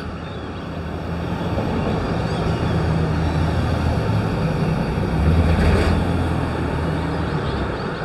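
Steady hum of vehicle engines and traffic with a low, even drone, swelling a little about five seconds in as a vehicle passes close.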